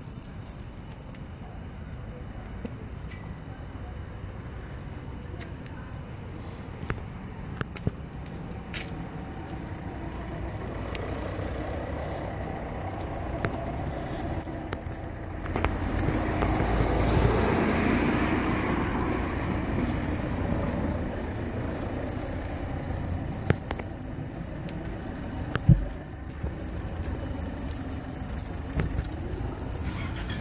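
A car passing along the street: its engine and tyre noise swells for a few seconds about halfway through, then fades. Underneath is a steady low street background with scattered small clicks and rattles.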